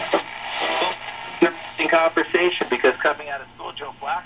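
Restored 42-322 wooden tabletop tube radio playing a voice broadcast through its speaker, over a faint background hiss and a steady low hum; the sound drops off near the end as the knobs are turned.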